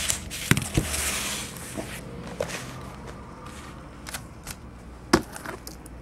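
Shrink-wrapped trading-card boxes being handled on a table: scattered light knocks and clicks, with a short rustle about a second in and the sharpest knock about five seconds in.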